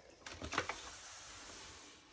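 A plastic cut-and-emboss die-cutting machine being set down on the table with a few light knocks, then slid into place with a soft, even scraping.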